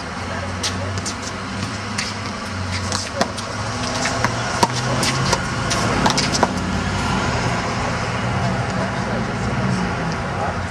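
One-wall handball rally: sharp slaps of the rubber ball off hands, the wall and the pavement, several in the first seven seconds. Under them runs a steady low rumble of city traffic.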